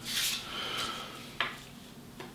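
Small paper cards handled on a wooden desk: a short papery rustle at the start as a card is picked up, then a sharp tap about one and a half seconds in.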